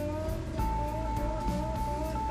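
Instrumental background music with a steady beat and a long held melody note through the middle.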